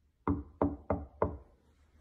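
Knuckles knocking four times in quick succession, about three knocks a second, on the side of a chest of drawers.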